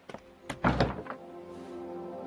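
A wooden lattice door is pushed open with a sharp click and a dull thud about half a second in. Soft background music with held notes comes in after it.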